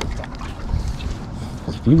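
Handling noise from a camera on a bendy-leg tripod being gripped and repositioned: a low rumble with a few faint clicks. A man's voice starts right at the end.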